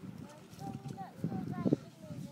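Faint, indistinct voices over low rumbling noise, with a sharp knock near the end.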